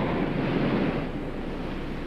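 Steady rushing outdoor ambient noise, with no distinct events, easing off slightly after about a second.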